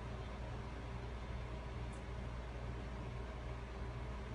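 Steady low background hum with faint hiss: room tone.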